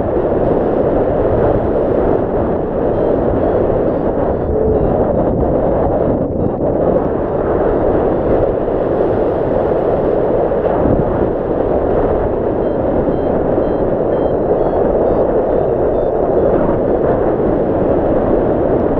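Steady, loud rush of wind buffeting the camera's microphone as a tandem paraglider flies through the air.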